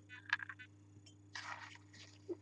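A wine taster slurping a mouthful of red wine, drawing air through it: a short, bubbly slurp at the start, then a breathier hiss of air past the middle.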